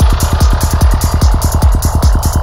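Electronic trance track: a steady pounding kick drum with a fast rolling bassline between the beats, and a hissing noise sweep over it that fades out near the end.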